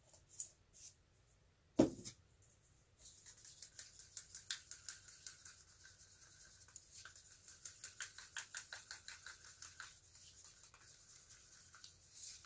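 A single sharp knock about two seconds in. Then comes a fast, rhythmic scraping and clicking, several strokes a second, as acrylic paint and pouring medium are stirred in a plastic cup; it eases off near the end.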